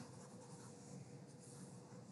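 Faint scratching of a stylus rubbed across a tablet screen while erasing, over a faint steady hum.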